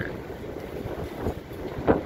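Wind rumbling on the microphone, with a short thump near the end.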